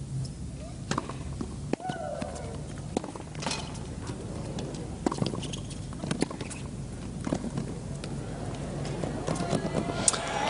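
Tennis ball struck by rackets during a rally: several sharp pops spaced irregularly a second or two apart, over steady low background noise.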